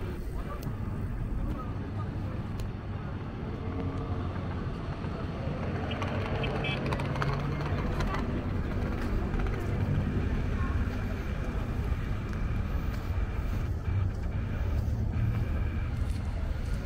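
City street ambience: a steady low rumble of road traffic, with voices of passers-by talking, clearest in the middle.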